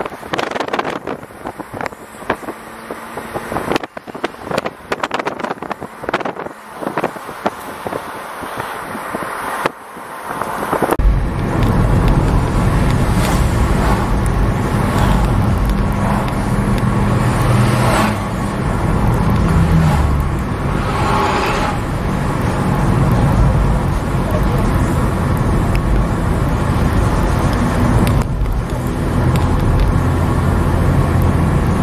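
Road noise heard from inside a moving vehicle. For the first ten seconds or so it is choppy and uneven with wind buffeting. About eleven seconds in it changes abruptly to a louder, steady engine and tyre drone with a low hum.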